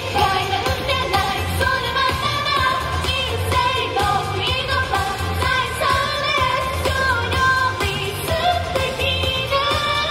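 Japanese idol pop song performed live: female vocals sung into handheld microphones over upbeat pop music with a steady, pulsing bass beat.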